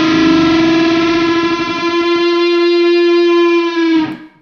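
Fuzz-distorted electric guitar playing a unison bend: a static note with the string beneath bent up to the same pitch, held as one steady, sustained note that cuts off just before the end. The fuzz makes it sound gritty.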